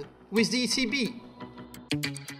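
A man speaks a short phrase over quiet film soundtrack music. Just before the end, a sharp hit opens a louder music passage.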